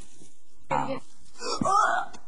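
A person's voice: two wordless vocal outbursts, a short one about a second in, then a louder, longer one near the end.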